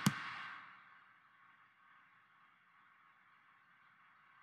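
Near silence: faint microphone hiss fading away within the first second, after a single click right at the start.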